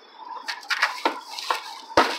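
A cat pawing out through the wire door of a plastic pet carrier at a crumpled paper bag: repeated crinkling and sharp clicks starting about half a second in, with a louder knock at the very end.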